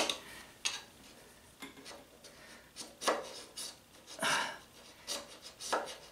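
Hand filing with a bastard file on the VW engine case around the oil pump opening: short rasping strokes at an uneven pace, about nine in all, with the file pressed hard by the thumb to take the case surface down.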